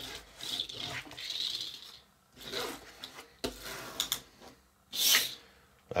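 Miniature plastic pull-back toy car being dragged back and forth on a tabletop, its small spring-wound pull-back motor rasping in a few bursts, with light clicks in between.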